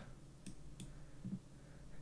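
Two faint clicks of a computer mouse, about a third of a second apart, over quiet room tone.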